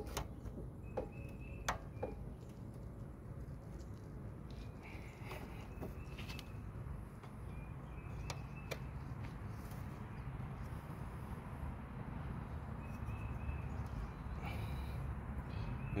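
A few sharp metallic clicks and knocks from a screwdriver driven through a stuck spin-on oil filter as it is levered against the filter, mostly in the first two seconds, with a couple more later. Behind them is a low steady outdoor background with faint high chirps.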